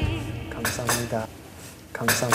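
Small ceramic side-dish bowls clinking as they are set down on a table, a few sharp clinks, over background music.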